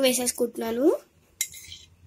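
A voice for about the first second, then a brief metallic clink and ring of a utensil against a stainless steel mixing bowl.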